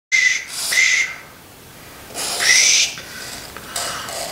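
Marker pen squeaking as it draws on cardboard, in two spells of strokes: the first lasts about a second, and a shorter one comes about two seconds in.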